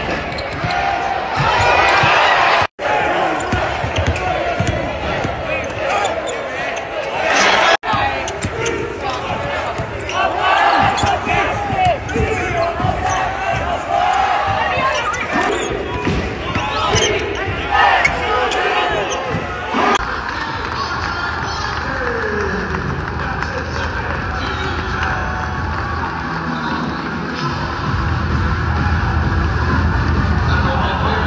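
Basketball game sound in an arena: a ball bouncing on the hardwood court amid players' and crowd voices, with brief cuts between clips. From about 20 s in, the sound settles into a steadier crowd murmur during a stoppage in play.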